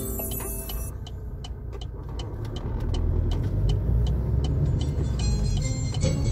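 Car engine and road rumble heard from inside the cabin, growing louder from about three seconds in, with a light steady ticking about three times a second. A song is cut off in the first second.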